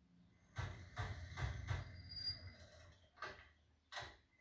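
Pat's animated post van, as a sound effect through a television's speaker: a low, uneven engine rumble as it drives up, a brief high squeal around the middle, and a sharp click just before the end.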